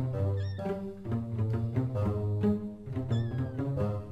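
Background music with deep bass notes throughout, over which a young kitten meows twice: a short high meow about half a second in, and a longer one with a falling pitch about three seconds in.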